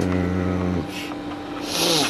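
A man's drawn-out, hesitant "um" at a steady pitch, with a faint steady electrical hum underneath, then a short hiss near the end.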